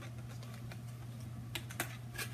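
Faint clicks and taps of cardboard-and-plastic blister packages being handled, with two sharper clicks in the second half, over a low steady hum.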